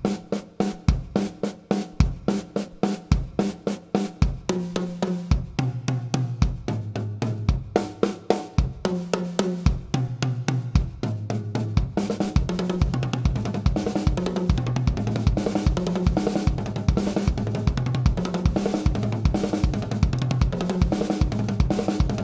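Acoustic drum kit being played, with strokes on snare, toms and bass drum and cymbals sounding. In the first half the strokes come spaced with heavy bass-drum thumps; from about halfway the playing turns into a denser, steadier pattern.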